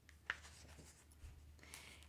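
Near silence: faint room tone with one soft click about a quarter second in.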